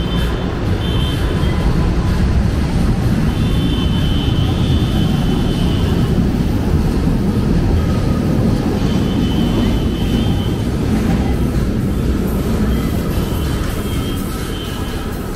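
LRT Line 1 light-rail train pulling out of an elevated station, its cars and wheels rumbling steadily along the track. The sound grows a second in and eases near the end as the last car clears the platform.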